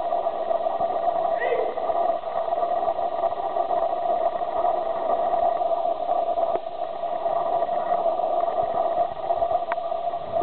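Indistinct, muffled speech over a steady hum.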